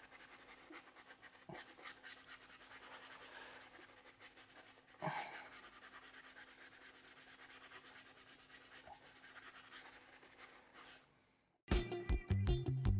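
Faint scratching and rubbing of a soft detailing brush scrubbing wet wheel cleaner over a car wheel's surface, with a short louder sound about five seconds in. The sound cuts off near the end and music starts.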